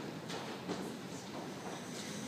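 Hall room noise with shuffling and a few faint scattered knocks, like people moving on and around a small wooden stage. No music or singing.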